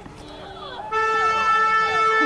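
A vehicle horn sounds one long, steady blast starting about a second in, with voices over it.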